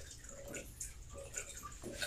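A man gulping water from a cup: several faint swallows about half a second apart.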